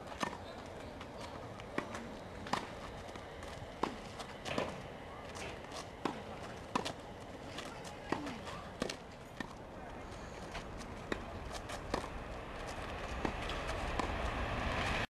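Tennis ball struck by a racket and bouncing on a hard court during a rally: sharp pops about once a second, often in pairs about 0.7 s apart.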